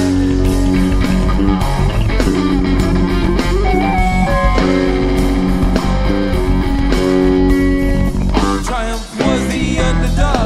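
A live rock band playing an instrumental jam with a steady beat and sustained notes. The sound dips briefly about a second before the end.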